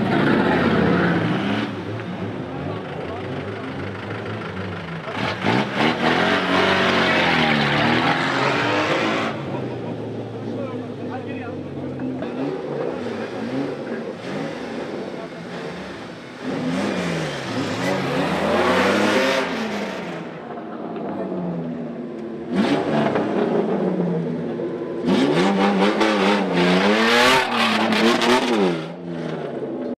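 Engines of modified off-road 4x4 race vehicles revving again and again, each rev rising in pitch and falling back, with the loudest bursts about a third of the way in, past the middle, and near the end.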